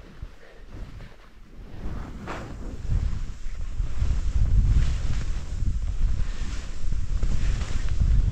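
Wind rushing over the microphone mixed with the hiss of skis cutting through deep powder during a fast downhill run, growing louder over the first three seconds as speed builds and then staying loud.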